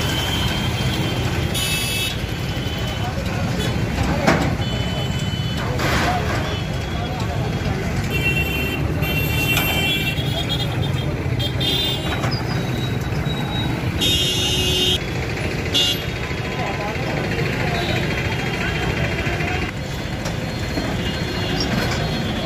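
Busy street with a diesel tractor engine running and people talking. Vehicle horns sound briefly a couple of seconds in and again about 14 seconds in.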